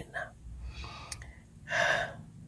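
A man breathing between phrases: a soft breath around the middle, then a louder, sharp intake of breath near the end.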